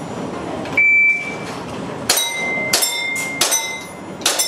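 An electronic shot timer beeps once about a second in, signalling the start of the string. From about two seconds in come three airsoft pistol shots, each with a BB striking a steel plate that rings.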